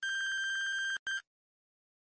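Electronic countdown-timer alarm beeping as the time runs out: one steady high beep of about a second, then a short beep of the same pitch.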